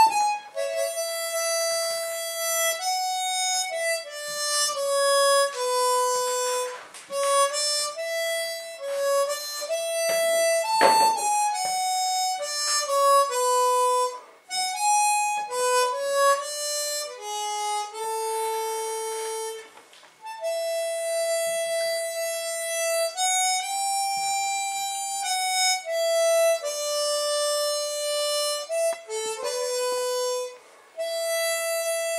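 A harmonica played solo: a single-line melody of held notes, some lasting a second or two, with brief pauses between phrases and one short noisy burst near the middle.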